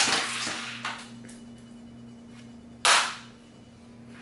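Aerosol air-freshener can sprayed in two short bursts: a hiss at the start that fades over about a second, and another about three seconds in.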